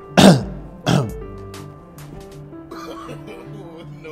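Two short throat-clearing coughs from a person, the second about a second after the first, over steady background music.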